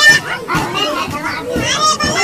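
High-pitched, pitch-shifted cartoon voices chattering, childlike in sound.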